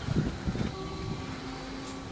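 Wind buffeting the microphone in uneven low thumps, over faint steady hum tones from an approaching train on the line.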